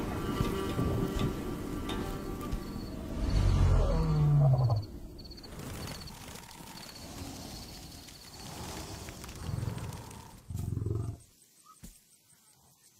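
Background music with a lion roaring about three seconds in: a deep, loud call that falls in pitch. Two shorter, quieter low calls follow near the end.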